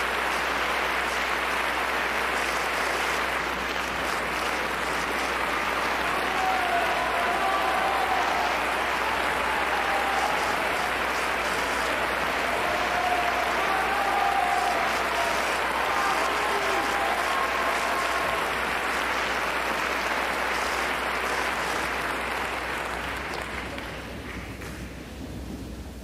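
Concert audience applauding after a song, with a few cheers rising above the clapping in the middle; the applause dies away near the end.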